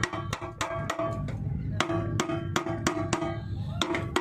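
Rapid hammer blows on the metal of a generator's water pump as it is knocked loose from the generator, about four to five strikes a second with short pauses, each strike ringing.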